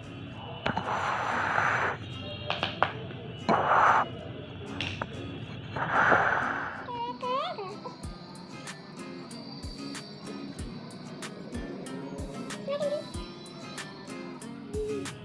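Background music with a steady beat of about one thump a second, starting about seven seconds in. Before it come three short hissing bursts.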